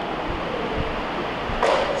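Steady hiss of hall and microphone noise in a pause between spoken sentences. Near the end comes a short rush of breath at the podium microphone, just before speech resumes.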